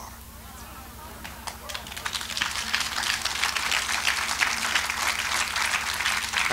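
Congregation applauding: many hands clapping, starting about a second in and building to a steady level.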